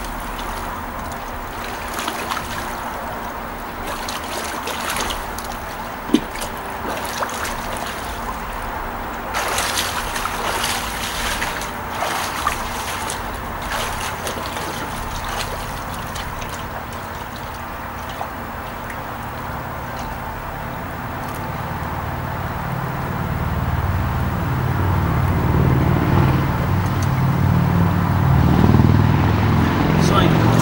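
Pool water splashing and sloshing from a swimmer's front-crawl strokes, with scattered splashes in the first half. A low rumble builds over the last third.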